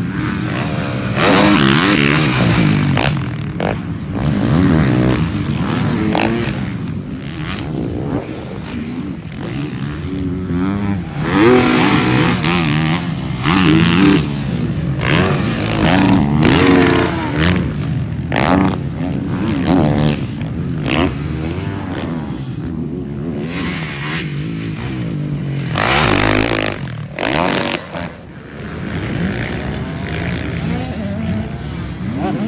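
Motocross dirt-bike engines revving on a track, pitch rising and falling again and again as the riders open and close the throttle over the jumps.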